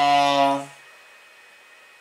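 A man's drawn-out hesitation sound, a flat-pitched 'eee' held for about a second at the start, followed by quiet room tone.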